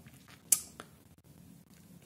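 A pause with faint room tone, broken by one short sharp click about half a second in and a fainter click shortly after.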